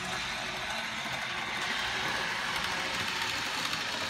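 Model train running along the track: a steady mechanical rattle from its small electric motor and its wheels on the rails.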